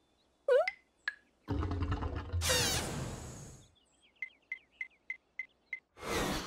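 A cartoon engine's loud new sound: a burst of noise with a low rumble and a bright hiss that fades over about two seconds. It is followed by a run of six short high pips, evenly spaced.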